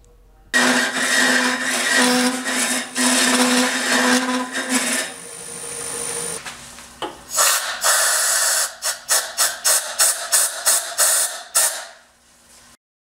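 Hollowing tool's straight cutter cutting into a spinning wooden hollow form on a lathe, hogging out wood in a loud steady scraping hiss. It eases off about five seconds in and comes back, then near the end breaks into a run of short quick cuts, about three a second.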